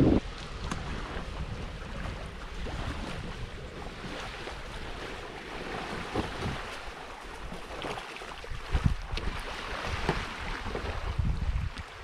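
Wind rumbling on the microphone over small waves washing onto a sandy beach. In the later seconds there are a few louder splashes and knocks as a sailing kayak is pushed out into the shallows.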